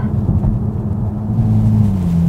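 Toyota GR Supra's 3.0-litre inline-six engine and exhaust heard from inside the cabin under way, a steady deep note that creeps slowly up in pitch and then drops to a lower pitch right at the end.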